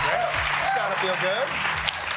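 Studio audience applauding, with voices talking and calling out over the clapping.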